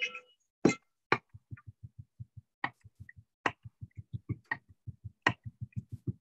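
Knife rough-chopping garlic on a cutting board: a rapid, steady run of chopping strokes, about six a second, with a sharper, louder knock every second or so.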